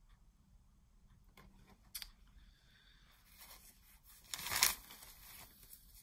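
Paper record sleeve rustling as a vinyl LP is handled, with a sharp click about two seconds in and a louder rustle just after four seconds.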